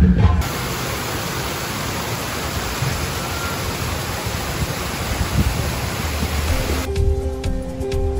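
Water of a cascading fountain pouring over a stone ledge into its basin, a steady rushing that cuts off suddenly about seven seconds in, where background music takes over.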